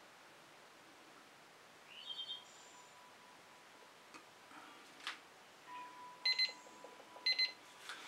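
Faint electronic beeping in a quiet room: a short chirp a couple of seconds in, a single click midway, then two quick bursts of beeps about a second apart near the end.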